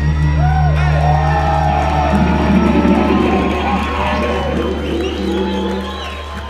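Live rock band letting a final chord ring out, electric guitars and a long held bass note without drums, as the song ends. Audience cheering and whoops sound over it, and the sound fades toward the end.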